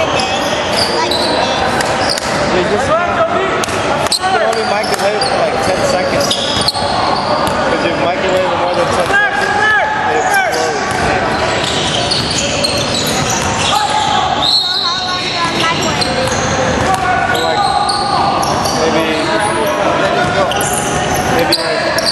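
Basketball game sounds in an echoing gym: a ball bouncing on the hardwood floor, short knocks and impacts, and players calling out throughout.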